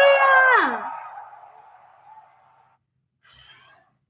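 A young woman's drawn-out, delighted exclamation, its pitch sliding steeply down as it ends about a second in, trailing off into a fading hiss; a faint breath follows near the end.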